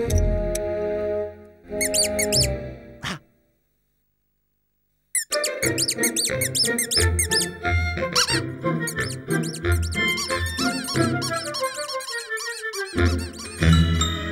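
Cartoon soundtrack music laced with quick, squeaky pitch glides. It breaks off into about two seconds of total silence a few seconds in, then resumes busily, with a falling run of notes near the end.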